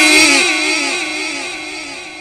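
A man's voice in melodic Quran recitation through a microphone, holding the last note of a phrase with small pitch turns and trailing off to a fade.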